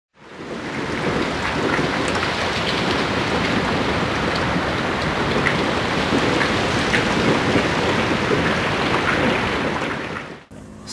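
Steady, even downpour of rain, fading in at the start.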